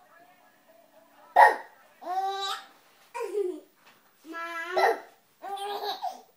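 Baby laughing in a string of short, high-pitched bursts, about five of them, the loudest and sharpest coming about a second and a half in.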